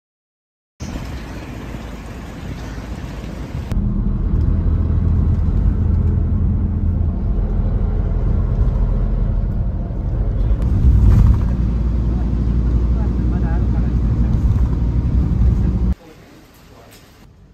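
Cabin noise inside a moving shuttle van: a steady low engine-and-road rumble that grows louder about four seconds in and swells briefly near the eleventh second. The first second is silent, followed by a few seconds of lighter outdoor noise.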